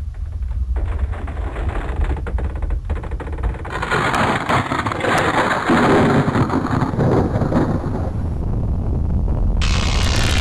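Deep, continuous rumbling sound effect with crackling, crashing noise that swells about four seconds in, like thunder or an earthquake. A harsh high-pitched noise cuts in near the end.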